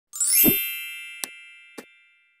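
Logo-intro chime: a bright, ringing stack of tones that slowly fades, with a low thud about half a second in and two short clicks near the end.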